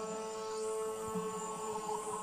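Live-coded electronic music: a steady synthesizer drone holding several tones at once, with a rougher low layer underneath.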